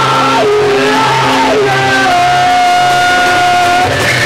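Rock band playing loudly live: an electric guitar plays sliding, bending lines over the bass, then holds one long note through the second half.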